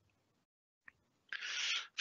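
Near silence with a faint click about a second in, then a short breath in near the end.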